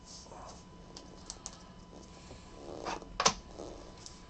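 Panini Prizm trading cards being handled and stacked on a mat: soft sliding and rustling of card stock with a few light clicks, and one sharp tap a little over three seconds in.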